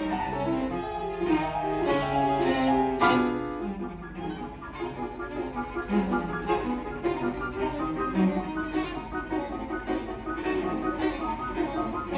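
Piano trio playing classical chamber music live: violin and cello bowing over grand piano. A strong accented chord comes about three seconds in, followed by a quieter passage of quicker notes.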